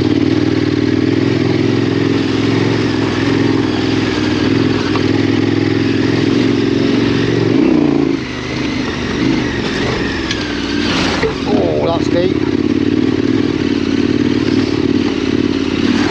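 KTM 1290 Super Adventure R's V-twin engine with a Wings exhaust, ridden at steady low revs. About eight seconds in, the note rises briefly and then drops as the throttle eases off. It picks back up a few seconds later.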